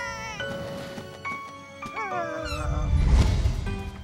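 Cartoon cat meowing, a short wavering call at the start and a falling one about two seconds in, over background music. About two and a half seconds in, a loud low rumble swells for just over a second.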